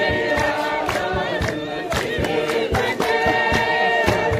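A group of voices singing together in chorus over a steady percussive beat, with the crowd joining in.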